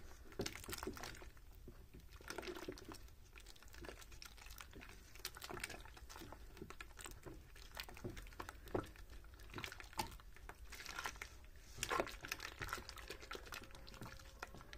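Silicone spatula stirring wine and bentonite clay in a metal bucket: faint sloshing and splashing of the liquid, with scattered small clicks and knocks as the spatula touches the bucket.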